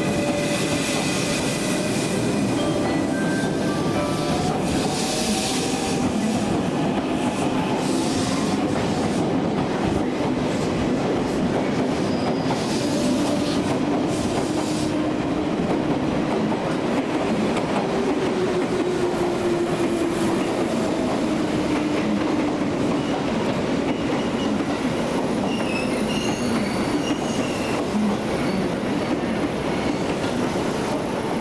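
JR West 283 series limited express electric train moving along a station platform as it departs: a steady rumble of wheels on rail, with faint whining tones that glide in pitch.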